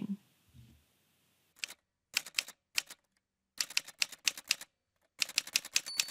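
Typewriter keys clacking in several quick runs of strokes, then a carriage-return bell rings right at the end.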